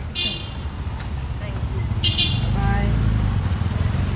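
Low, steady rumble of a car engine running close by, growing louder about halfway through. Two short, high-pitched shouted calls break in near the start and again about two seconds in.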